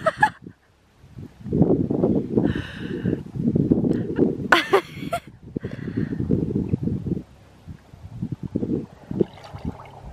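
Water splashing and sloshing in a wood-fired bath as a person scoops it up with her hands and washes her face. It comes in irregular bursts starting about a second in and thins to small splashes in the last few seconds.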